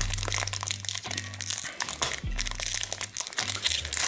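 Foil hockey card pack wrapper crinkling in the hands as it is opened, over background music with a steady low bass line.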